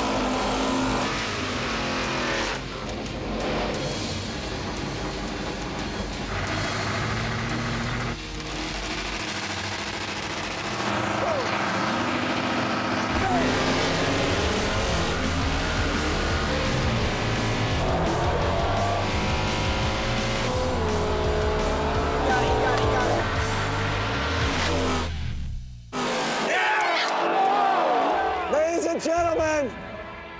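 Drag cars doing tyre-squealing burnouts and running down the strip, mixed under background music.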